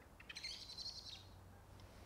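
A faint, high-pitched bird call just under a second long, starting about half a second in, over a quiet background.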